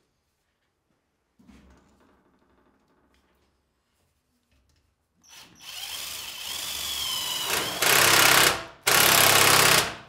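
Cordless drill-driver driving screws into galvanized steel dust-collection duct fittings. Its motor whine builds and wavers, then comes two loud, hard bursts of driving near the end, about a second each with a brief pause between.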